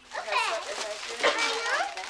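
A young child's high-pitched voice, vocalizing without clear words.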